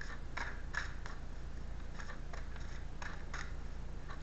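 Tarot cards being shuffled by hand: scattered short snaps and rustles of the cards, over a low steady hum.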